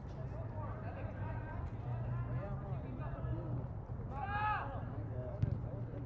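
Voices of players and sideline spectators calling out across an open field, with one louder shout about four seconds in, over a steady low hum. A single sharp knock comes shortly after the shout.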